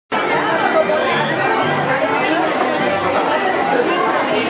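Indistinct chatter of many overlapping voices, steady and fairly loud, echoing in a large indoor hall.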